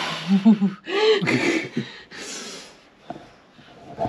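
A person laughing breathily: long huffing exhales with short voiced snatches of laughter between them.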